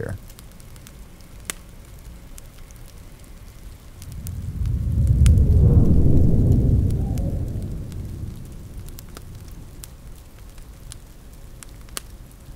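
Ambience of a crackling fire over steady rain. About four seconds in, a long low rumble swells up, is loudest around six seconds, and fades away over the next few seconds.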